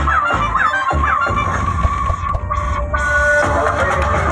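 Loud electronic dance music with a heavy bass, played over a DJ sound system; short falling synth notes repeat about three times a second in the first second or so, then give way to held notes, and the treble briefly drops out past the middle.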